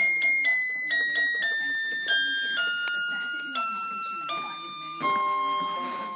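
Toy electronic keyboard playing a descending run of about nine high, clear notes, one roughly every half second, the last held longer.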